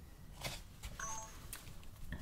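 A few faint clicks and a brief, quiet electronic beep about a second in, over a low steady hum.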